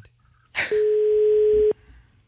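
Telephone ringback tone heard down a phone line: a short click, then one steady tone about a second long that cuts off sharply, the ring of the call before it is answered.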